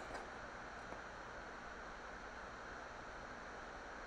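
Faint, steady background hiss: room tone with no distinct events.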